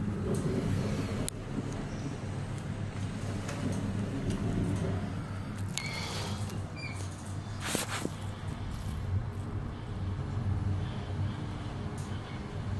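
Mitsubishi Electric passenger elevator car travelling down, a steady low hum of the ride heard inside the car. A few sharp clicks and two short high tones about six and seven seconds in.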